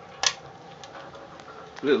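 Wood-fired rocket stove burning well with a steady low rush and faint crackles. One sharp snap comes about a quarter second in.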